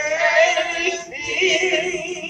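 A woman singing solo, holding notes with a wavering vibrato.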